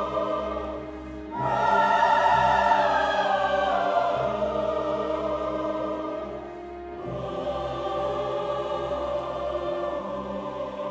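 Large mixed choir singing sustained chords with symphony orchestra. A loud new phrase enters about a second and a half in, fades a little past the middle, and another phrase begins about two-thirds of the way through.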